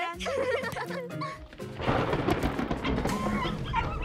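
Cartoon background music, then about two seconds in a rumble of thunder lasting a second or so.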